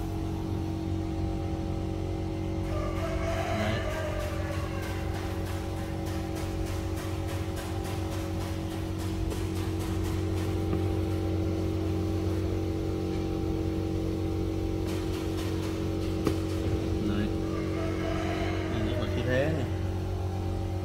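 A steady low hum throughout, with faint voices in the background twice and a run of light clicks in the middle.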